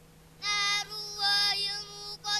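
A child's voice chanting Quranic recitation in long, held melodic phrases. It begins about half a second in, with two drawn-out phrases.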